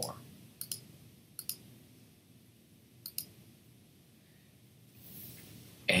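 Computer mouse clicking three times, each a quick pair of clicks. The first two come close together and the last follows after a longer pause, over quiet room tone.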